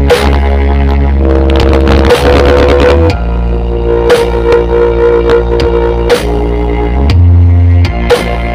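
DJ remix music played very loud through a huge stacked outdoor sound system, dominated by long, heavy deep-bass notes that shift pitch a few times, with sustained tones above and a sharp hit about every two seconds.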